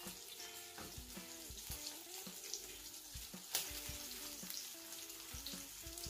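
Smoked beef slices frying gently in olive oil in a wok, a faint steady sizzle as the heat comes up and the meat begins to brown. A single sharp click comes about three and a half seconds in, as the metal fork turning the slices strikes the pan.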